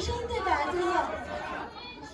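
Voices talking over one another, chatter that dies down near the end.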